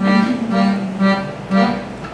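Piano accordion playing an instrumental passage of held notes and chords, changing about every half second.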